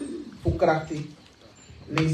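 A man's voice: a short pitched utterance about half a second in, then a brief pause ended by a sharp click.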